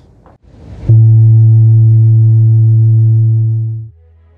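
A ship's horn sounding one long, loud, steady low blast on an old film soundtrack. It starts suddenly about a second in and stops shortly before the end.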